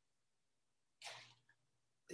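Near silence, with one short, faint breath from the man at the microphone about a second in.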